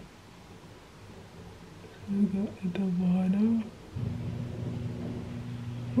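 A woman's short, wordless voice, a held low murmur while she concentrates, about two seconds in. A steady low hum starts about four seconds in and keeps going.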